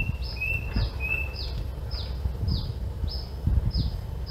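Birds calling in garden trees. One repeats a short, high, falling note about twice a second throughout, and another gives a few lower drawn-out notes in the first second. A low rumbling noise runs underneath.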